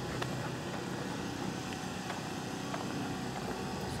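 Steady outdoor street background noise: a low, even hum of distant traffic.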